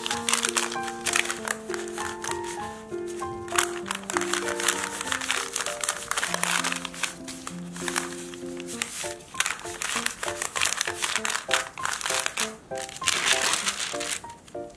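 Baking paper crinkling and rustling in irregular bursts as gloved hands roll and press a log of cookie dough wrapped in it, over background music with a simple melody.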